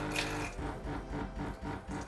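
Smeg espresso machine's pump running its descaling cycle: a low hum that pulses rapidly and evenly as it pushes the water and descaler solution through the machine.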